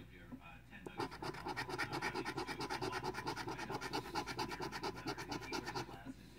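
A coin scratching the coating off a lottery scratch-off ticket. From about a second in, it goes in rapid, evenly repeated strokes.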